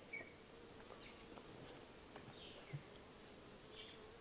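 Near silence, with the faint, steady buzzing of honeybees flying around the nuc hives.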